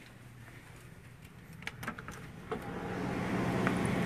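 A door being opened by hand: a few sharp clicks and knocks of the latch and handle, then a steady hum grows louder as the door swings open.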